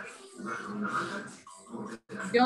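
A dog whimpering, picked up by a participant's microphone on a video call.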